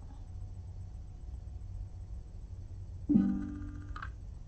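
A smart speaker's short musical confirmation chime about three seconds in, one plucked-sounding chord that rings and fades in under a second. It answers a spoken command to turn off a light, over a low steady room hum.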